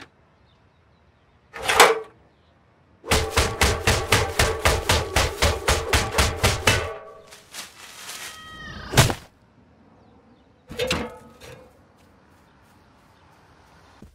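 Cartoon sound effects of a metal ladder: a couple of knocks, then a rapid run of ringing metallic clanks, about five a second for nearly four seconds, that dies away, then one loud hit a little after the middle.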